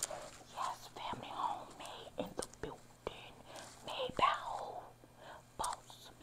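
A woman whispering close to a clip-on microphone, in short broken phrases with a few sharp clicks between them.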